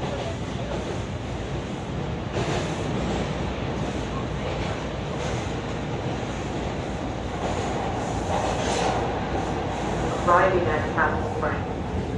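Toronto Bombardier T1 subway car running on the rails, a steady rumble and rail noise heard from inside the car. Near the end a recorded station announcement for Castle Frank begins over it.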